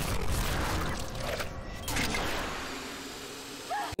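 Movie soundtrack of a gas explosion: a broad rumble that swells once about two seconds in and then fades away.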